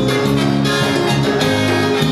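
Live plena band playing an instrumental passage, with guitars, brass and percussion over a steady dance beat.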